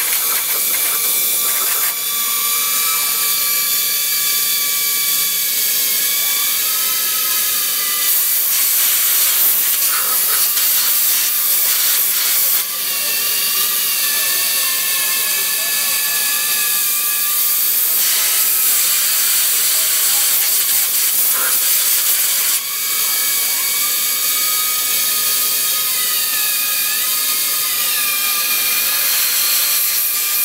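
Drill running as it cuts the bore of a wing attach fitting: a steady hiss under a high whine whose pitch sags and recovers several times as the bit loads up in the metal.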